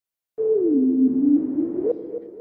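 Synthesized electronic tone opening an intro animation's soundtrack. It starts after a brief silence, glides down in pitch, holds low for a moment, then glides back up to where it began.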